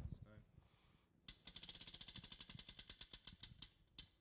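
Tabletop prize wheel spun by hand, its pointer flapper clicking rapidly against the rim pegs; the clicks start about a second in, slow steadily as the wheel winds down, and stop shortly before the end.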